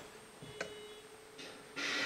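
Kato Sound Box being switched on: a faint click a little over half a second in, then near the end a steady hiss comes up as the sound box starts up.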